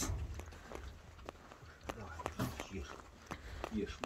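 Faint, irregular footsteps on snowy ground over a low rumble, with a faint voice just before the end.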